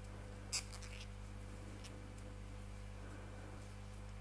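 Faint scratching of cotton thread being drawn through stitches with a crochet hook, with one small sharp click about half a second in and a few fainter ticks, over a steady low hum.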